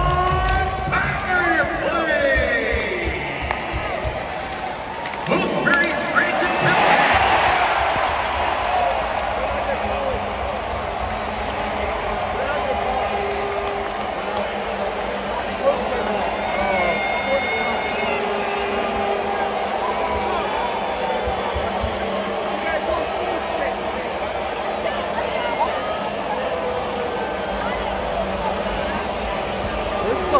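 Hockey arena crowd noise with music over the arena's PA. About five seconds in there is a sharp knock, and then the crowd's cheer swells loudly for a couple of seconds at an apparent goal, settling into a steady crowd din with music.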